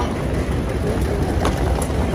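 Steady low rumble of an airport moving walkway in motion, with a single sharp click about one and a half seconds in.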